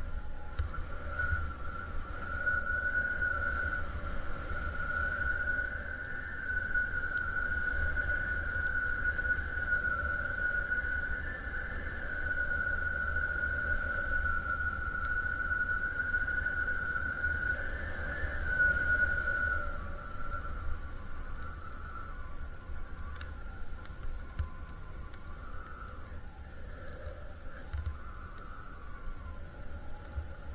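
A snowmobile engine heard at a distance, giving a steady high whine that wavers slightly in pitch for about twenty seconds and then fades, over wind rumbling on the microphone.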